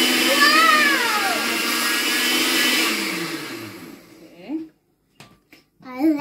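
Oster countertop blender running steadily on a mix of bread crumbs and ground raw chicken, then switched off about three seconds in, its motor hum falling in pitch as it winds down. The bread and meat fail to blend together in it.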